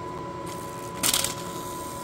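A spinning end mill snatches and tears a paper slip held against it: one short, loud burst of paper rasping about a second in. This is the paper-slip edge-finding method, where the paper being caught means the cutter has reached the edge of the work. Under it is the steady whine of the running mill spindle.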